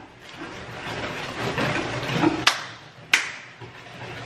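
Eggs being whisked in a bowl: a rough rustling scrape, with two sharp clinks of the whisk against the bowl after about two and a half seconds.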